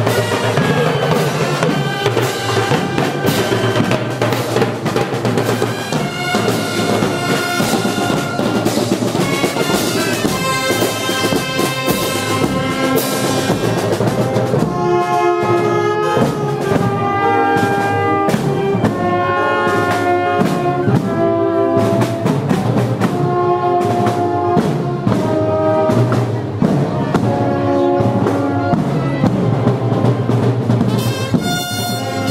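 Marching band playing: trumpets and trombones over timpani, snare drum and bass drum keeping a steady beat.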